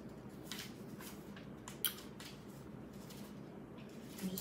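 Pages of a small paper booklet being handled and leafed through: a few soft rustles and clicks, with one sharper click a little before the middle, over quiet room tone.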